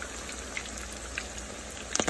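Salmon patties frying in hot oil in a skillet: a steady sizzle with light crackles.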